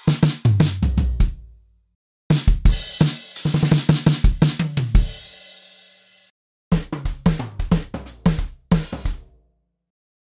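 Recorded acoustic drum-kit fills played back one after another with short silent gaps. The tail of one fill ends on low drums ringing down. The next fill of kick, snare and toms ends in a cymbal that rings out, and a third short fill follows near the end.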